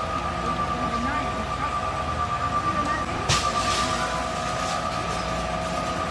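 Fire apparatus running on the street at a working house fire, giving a steady high whine with a lower tone beneath it. A short, sharp noise cuts across it about three seconds in.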